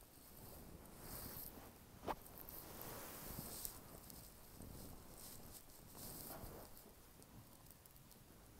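Near silence: faint rustling and shuffling movement, with one short click about two seconds in.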